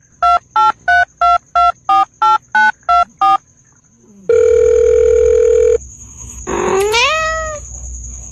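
Telephone keypad tones, ten quick two-tone beeps like a number being dialled, then a steady telephone tone for about a second and a half, then a cat's rising meow.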